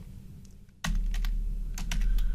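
Computer keyboard typing: a short run of quick keystrokes starting a little under a second in, with a low hum that comes in with the first key.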